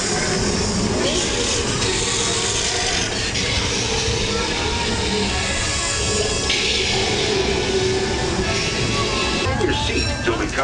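Music from a ride's soundtrack over the steady running noise of the train's cars on the rails.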